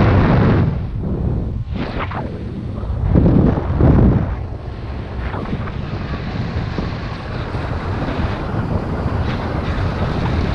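Airflow rushing over a paraglider pilot's camera microphone in flight, buffeting unevenly, with stronger gusts at the start and again about three to four seconds in.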